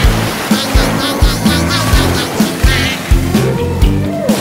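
Fast cartoon background music with a driving beat of about two thumps a second over a steady bass line.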